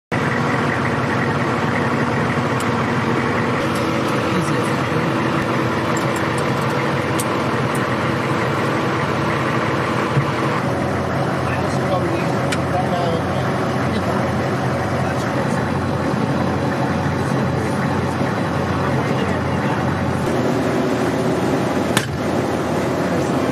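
Steady engine rumble and cabin noise inside a military Humvee, with indistinct voices under it.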